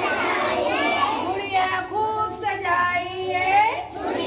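Children singing a Hindi nursery rhyme together, holding long notes that slide in pitch.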